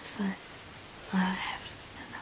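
A young woman's soft voice: two short murmurs about a second apart, the second a little longer.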